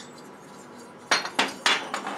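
Cut-open finned aluminium two-stroke cylinders being set down and handled on a workbench: about four sharp metallic clinks in the second half.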